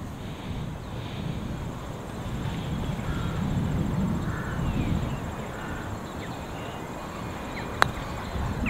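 A putter striking a golf ball once near the end: a single sharp click. Under it, a steady low rumble of wind on the microphone.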